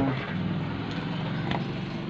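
Steady low mechanical hum, like a motor running, with one faint click about one and a half seconds in.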